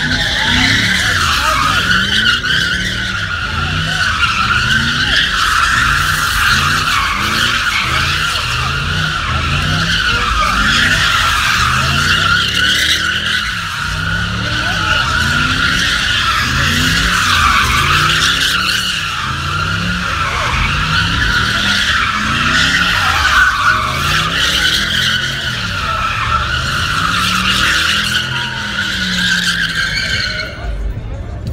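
Car doing a burnout: the tyres squeal continuously, the pitch wavering, while the engine revs up and down over and over, about once a second.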